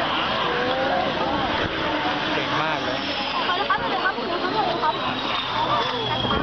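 Saab JAS 39 Gripen's Volvo RM12 jet engine running on the runway: a steady roar with a high whine that slowly falls in pitch from about halfway in, heard over crowd chatter.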